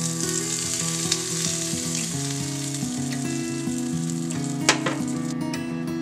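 Hot tempering oil with curry leaves, green chillies and mustard seeds sizzling with a steady hiss as it is poured over freshly ground coconut chutney. A single brief tap comes near the end.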